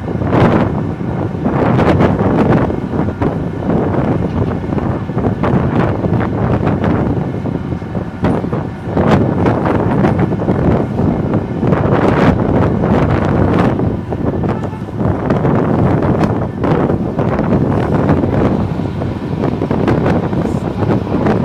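Wind buffeting the microphone: a loud, rumbling noise that rises and falls in gusts.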